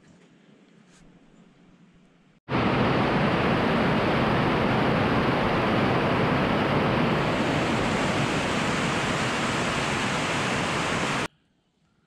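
Heavy rain pouring down, heard from inside a metal barn: a loud, even hiss that starts abruptly about two seconds in and cuts off abruptly just before the end.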